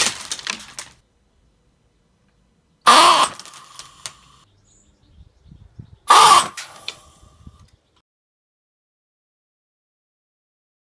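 Airsoft Innovations Master Mike 40mm gas shower shell fired three times, about three seconds apart: each shot a sharp gas blast carrying the shell's quacking duck-call cry, with a brief lingering tone after the second and third.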